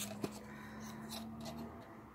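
Faint taps and scraping of cardstock pieces being handled and fitted onto a small card box, over a steady low hum.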